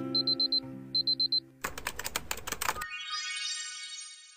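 Acoustic guitar music with two runs of five quick, high alarm-clock beeps over it. The music then stops and a fast clatter of typing-like clicks follows, ending in a held bell-like ding that fades out.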